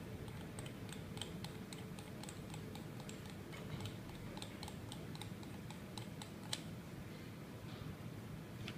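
Small, irregular metal clicks of copper vape-mod parts being turned and screwed together by hand, several a second, with one sharper click about six and a half seconds in.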